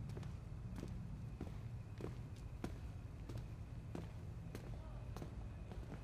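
Footsteps on stone paving, hard heels clicking at an even pace, about three steps every two seconds, over a steady low rumble.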